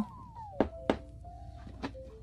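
Three sharp knocks on the hard carbon-fibre-patterned shell of a Gruv Gear Kapsule gig bag as it is handled, the second following the first closely and the third coming near the end.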